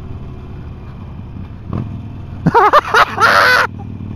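Harley-Davidson Sportster 1200 Forty-Eight's V-twin running steadily under way through a Jekyll & Hyde exhaust, its flap opened by a handlebar button to make it loud. From about two and a half seconds in, a loud vocal exclamation from the rider lasts about a second over the engine.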